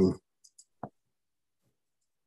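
The tail of a man's drawn-out "um", ending just after the start, then two faint ticks and one short knock a little later, followed by silence.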